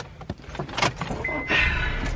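A car's engine starting about one and a half seconds in, then running with a low rumble, with a steady high beep from the car sounding just before it starts.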